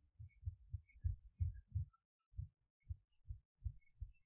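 A run of low, muffled thumps at an uneven pace, several a second, closest together in the first two seconds.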